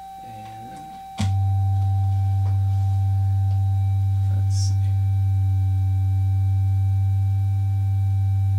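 Modular synthesizer sine-wave tones sounding together: a steady high tone, joined about a second in by a much louder steady low sine tone. The two oscillators are not quite in tune with each other, so their combined wave doesn't settle into a clean shape.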